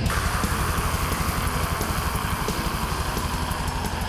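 Black metal band playing: a dense wall of distorted guitar over fast, even drumming, with the guitar noise easing near the end.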